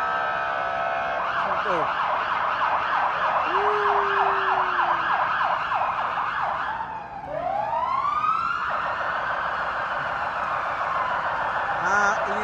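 Police patrol car siren at close range. It holds a steady tone, switches about a second in to a fast yelp of about three to four rising-and-falling cycles a second, drops out briefly near the seven-second mark, then climbs in one slow rising wail before going back to a fast warble.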